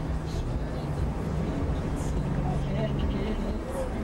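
Steady low rumble of a car's engine and tyres, heard from inside the moving car, with a faint steady hum over it and faint voices in the second half.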